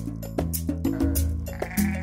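A hair sheep bleats from about a second in, with one drawn-out call, over background music with a steady bass line and light percussion.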